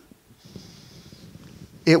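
A man drawing a long breath, a soft breathy hiss lasting about a second and a half, before his speech starts again near the end.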